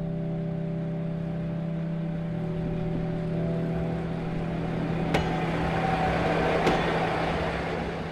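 Diesel locomotive engine running with a steady low hum, its rumble growing louder from about a third of the way in, with two sharp metallic clicks about a second and a half apart near the end.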